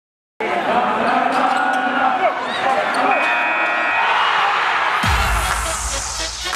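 Podcast intro sting: music layered with voices and sound effects, starting abruptly after a short silence, with a deep low boom and a falling whoosh about five seconds in.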